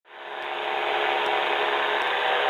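Steady drone of an Evolution Revo weight-shift trike in cruise flight, its engine and pusher propeller giving a hum with several steady tones, fading in over the first half second.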